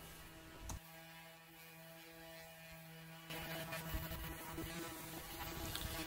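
Ryobi electric sander with a 5-inch sanding disc running faintly with a steady hum. A click comes just before a second in, and a rougher hiss joins from about three seconds in, as of the disc sanding the trailer's metal.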